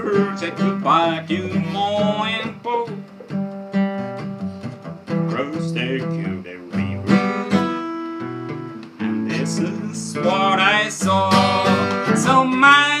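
Jumbo-body Epiphone acoustic guitar played in an instrumental passage of a country-style song: strummed chords over a low bass line that steps from note to note.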